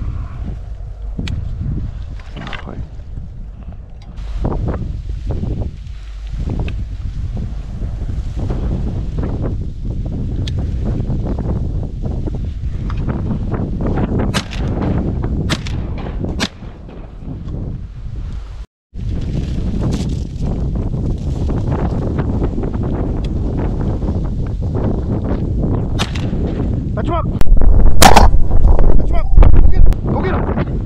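Wind buffeting the microphone of a gun-mounted camera, with scattered sharp knocks and cracks. The sound cuts out completely for a moment about two-thirds of the way in. For the last few seconds the wind noise becomes much louder, near clipping.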